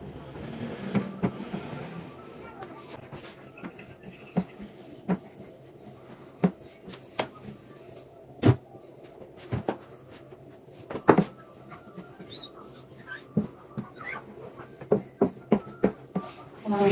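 Scattered short clicks and knocks of small hard items being handled on a glass gas hob, with a soft cloth rubbing sound in the first two seconds. The knocks come one or two at a time, the loudest about eight and a half seconds in, and several close together near the end as the burner knobs are handled.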